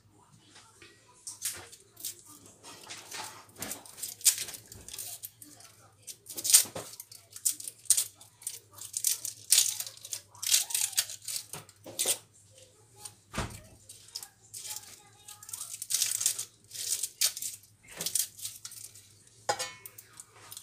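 Dry papery shallot skins being peeled off by hand and with a kitchen knife: a steady run of short crackles and crinkling rustles.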